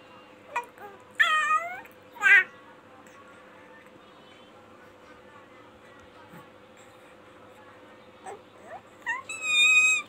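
Baby squealing: two short high-pitched squeals a little over a second in, then a longer, shriller squeal near the end as he laughs. A faint steady hum runs underneath.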